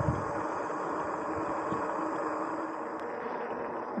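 Steady rushing of wind and tyre noise while riding a RadRover fat-tyre electric bike along a paved road.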